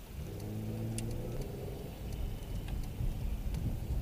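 Car engine pulling away and accelerating, heard from inside the cabin.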